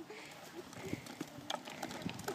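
A toddler scooting a small balance bike along a concrete sidewalk: faint, irregular light taps and scuffs as his shoes push off the pavement, more of them towards the end.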